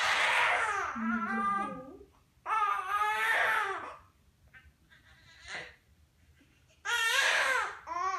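Newborn baby crying: three loud, high-pitched wails with short pauses between them, the last one briefer and near the end.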